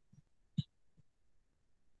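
Near silence, broken once by a brief faint sound about half a second in.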